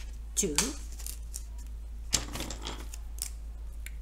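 A single sharp plastic click about halfway through, followed by a brief rustle of handling, as a felt-tip marker is picked up and uncapped. A steady low hum runs underneath.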